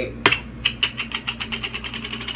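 A fast, even run of small mechanical clicks, about ten a second, lasting about two seconds.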